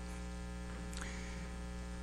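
Steady electrical mains hum through a live PA sound system, a low buzz with a ladder of overtones and no change in level.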